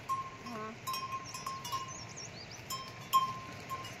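Neck bell of a plough bullock clinking in short, uneven rings.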